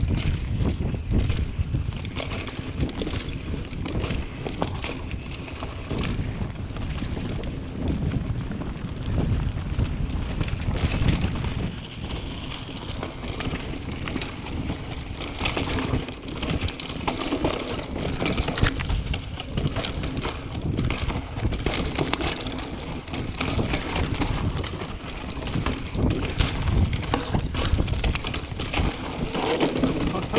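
Mountain bike descending a dirt trail at speed: wind buffeting the action camera's microphone, tyres running over dirt, and the bike rattling with frequent short knocks over bumps.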